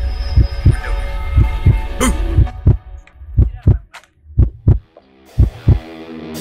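Film-score tension build: low heartbeat-like thumps over a sustained drone. About halfway the drone drops away, leaving paired thumps about once a second, and a rising swell near the end leads into rock music.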